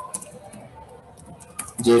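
Computer keyboard typing: a run of light key clicks.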